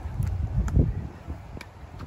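Wind buffeting the microphone, an uneven low rumble that is loudest a little under a second in, with a few faint sharp clicks.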